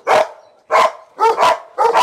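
Dog barking in short, loud barks, about five in two seconds.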